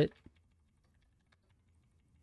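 Faint, scattered keystrokes on a computer keyboard, a few separate taps, as a spreadsheet formula is entered and copied across.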